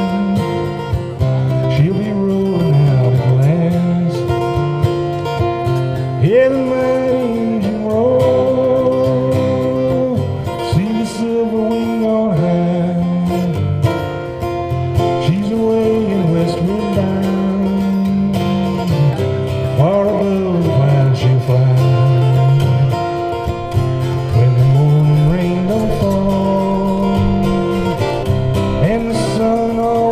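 Folk song: a man singing in long held notes over his own strummed acoustic guitar.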